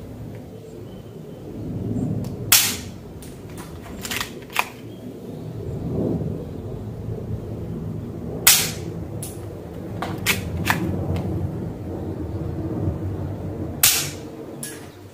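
A Sanei Walther P38 air-cocking toy pistol firing tsuzumi pellets: three sharp pops about six seconds apart, the first about two and a half seconds in and the last near the end. Fainter clicks fall between the shots, over a low background rumble.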